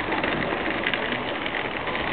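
Steady outdoor street background noise between sentences of preaching, an even hiss-like wash with no single distinct sound standing out.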